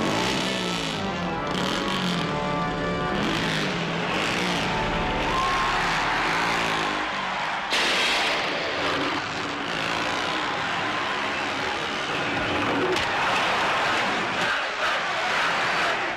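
Movie-trailer soundtrack: music mixed with vehicle engine noise, with a sudden loud hit about eight seconds in.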